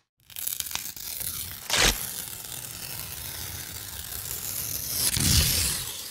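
Noisy electronic sound effects from a projection show's soundtrack: a harsh rushing, tearing noise with a short sharp burst about two seconds in, swelling again near the end before cutting off abruptly.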